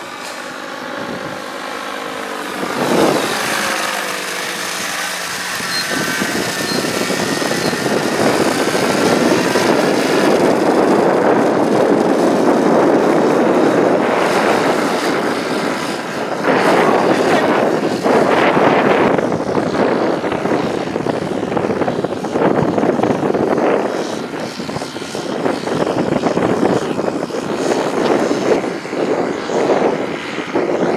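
Paramotor engine and propeller running. Its pitch wavers in the first few seconds, then it settles into a steady, loud, rough drone.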